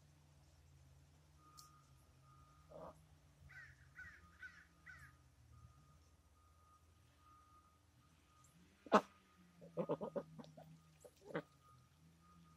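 White domestic ducks calling: a few faint short calls early on, then a single loud, harsh quack about nine seconds in, followed by a person laughing.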